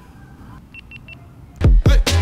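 GoPro Hero 7 action camera giving three short high beeps as it is switched on. About three-quarters of the way through, electronic music with a heavy bass kick drum starts.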